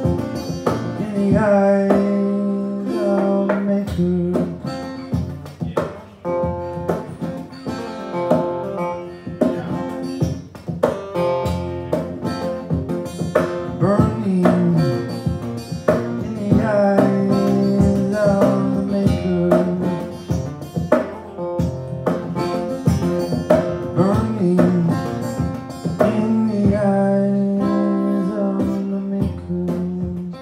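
Acoustic guitar played lap-style with a slide, playing an instrumental passage: sustained notes with slide glides every few seconds over a repeated low note.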